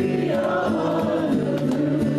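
A live gospel worship song: a group of voices singing together, accompanied by a strummed acoustic guitar.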